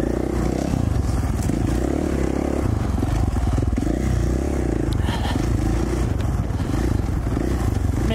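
2017 KTM 450 XC-F dirt bike's single-cylinder four-stroke engine running under way on a trail, its revs rising and falling several times as the throttle is worked. Light clatter comes from the bike over the rough ground.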